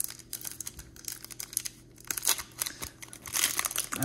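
Crinkling of a hockey card pack's foil wrapper and cards being handled: scattered crackles that grow denser and louder in the last second or so.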